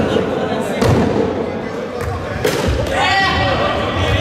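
Sharp knocks of an indoor cricket ball in a reverberant sports hall, the loudest about two and a half seconds in as the bat strikes the ball. Players' voices call out straight afterwards as the batter sets off running.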